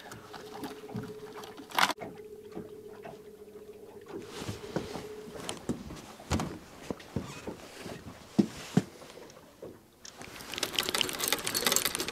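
Clicks and knocks of fishing gear being handled on an aluminium boat, over a faint steady hum for the first five seconds or so. Near the end a rapid ticking builds: a fishing reel's clicker ratcheting as a fish takes the bait and pulls line.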